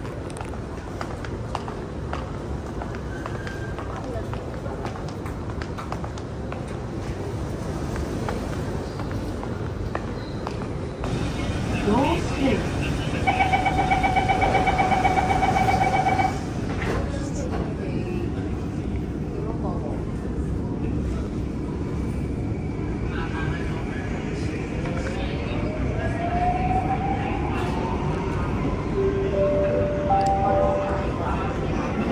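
Downtown Line metro train at a station: steady platform and train rumble, then a pulsing door-closing warning tone for about three seconds midway. Near the end the train pulls away, its motors whining and rising steadily in pitch.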